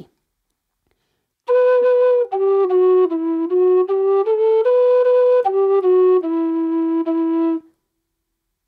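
Low D whistle playing one slow phrase of an E-minor Irish march, starting on a B and moving through separate, cleanly tongued notes. It settles on a long held low note near the end.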